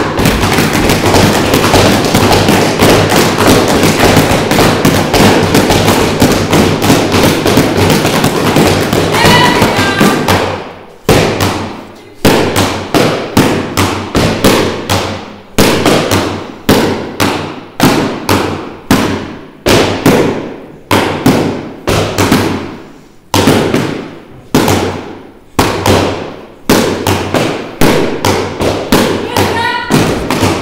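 Sticks striking stacked car tyres over and over: a dense, continuous run of hits for about the first ten seconds, then quick bursts of strikes separated by short pauses.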